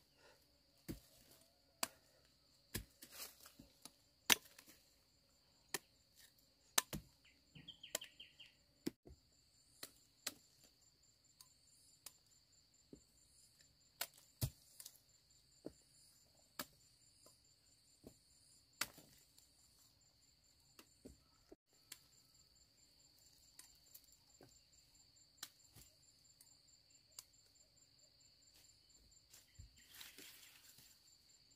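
Machete chopping into cassava stalks and roots: irregular sharp chops, frequent in the first half and sparser later. Insects drone steadily throughout, with a faint rapid chirping joining after about nine seconds.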